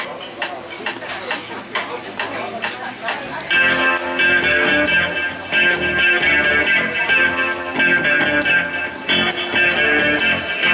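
Electric guitar with a backing-track band playing a song's instrumental intro. It opens quietly with evenly spaced ticks, then the full band comes in loudly about three and a half seconds in, with a steady beat.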